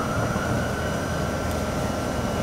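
Steady room noise from building machinery: a low hum with a faint high whine held at one pitch throughout.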